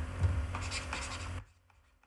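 Stylus strokes on a tablet writing surface as a word is handwritten, over a low electrical hum; the sound cuts out abruptly about three-quarters of the way through.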